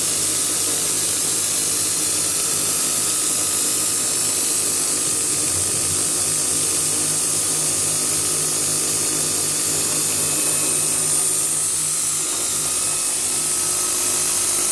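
CNC milling machine running a program: its spindle motor runs with a steady whine over a constant high hiss and a low hum, as the head feeds down to the workpiece for a facing pass.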